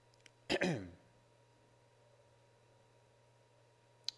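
A man coughs once, a short throat-clearing cough about half a second in, with a brief voiced tail falling in pitch. Faint steady low hum of room tone for the rest.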